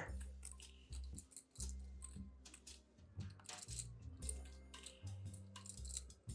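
Faint background music with a low, stepping bass line, over light, irregular clicking of poker chips being fingered and riffled at the table.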